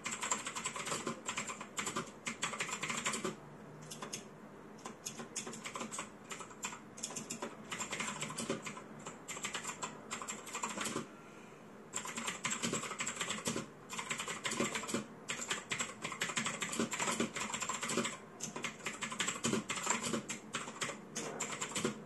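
Steady typing on a mechanical keyboard: a fast run of key clicks, with a brief pause around the middle.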